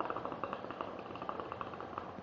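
Water bubbling in the glass base of a small Cedar Tree travel hookah as the smoker draws on the hose: a quick, steady run of gurgling pops.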